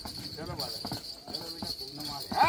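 A horse's hooves stepping and shifting on paved stone, a few scattered knocks, with people's voices talking quietly alongside.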